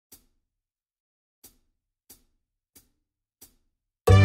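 Faint percussive count-in clicks at 91 beats per minute: one click, a two-beat gap, then four evenly spaced clicks, each ringing briefly, marking the tempo before the song starts.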